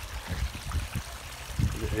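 Water running and trickling steadily over ragstone falls and into pools in a small pump-fed garden stream.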